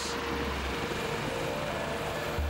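Helicopter in flight: a steady, even drone of rotor and turbine noise with a low hum underneath, heard from aboard the aircraft.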